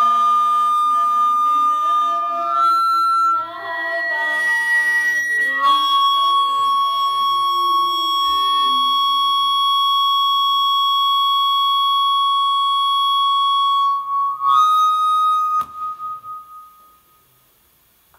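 A girl singing into a handheld microphone, mixed with a steady, shrill high tone that steps between a few pitches and then holds one note for about nine seconds. The sound cuts off sharply about three quarters of the way in, with a brief ring afterwards.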